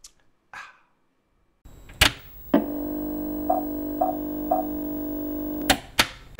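Edited transition sound effect: a sharp hit, then a steady buzzing chord with three short beeps half a second apart, ending on another hit. A few faint taps come just before it.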